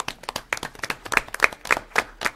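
A small group of people applauding: a scatter of separate hand claps that starts suddenly and keeps going.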